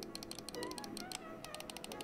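Side buttons of a Superframe Light gaming mouse being pressed by thumb, a quick run of light plastic clicks. The side buttons are soft and mushy in feel, with a pleasant click sound.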